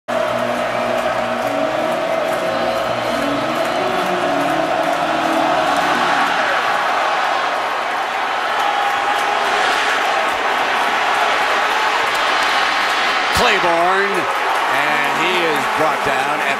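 A large stadium crowd cheering loudly and steadily through a football kickoff. A sharp knock comes about thirteen seconds in, followed by a man's voice.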